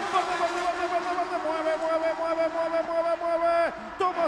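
TC Pista Mouras touring car engines at full throttle as the pack accelerates away from the start, one engine note held high and steady, then dropping sharply at a gear change near the end.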